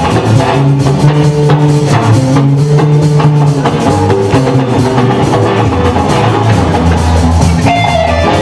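Live pop-rock band playing a Cantopop dance song: drum kit keeping a steady beat under bass guitar and electric guitar.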